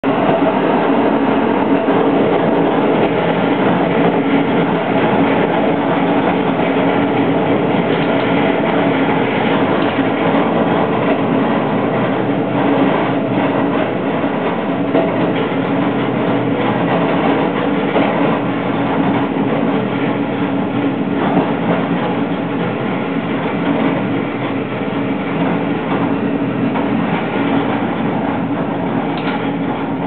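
A diesel railcar heard from inside the car, its engine and running gear making a steady drone with the occasional knock from the wheels on the rails. The drone eases slightly toward the end as the train slows for a station stop.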